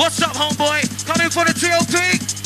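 A drum and bass MC chatting in quick rhythmic syllables over a fast drum and bass mix with a steady deep bass note.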